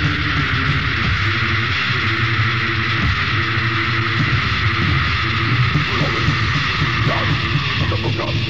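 Melodic doom/death metal band playing on a demo recording, a dense wall of distorted guitar over the low end.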